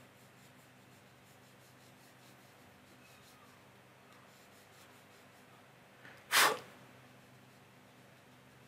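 Faint scratching of a paintbrush on watercolour paper, then one short, sharp, loud breath noise from a person a little over six seconds in.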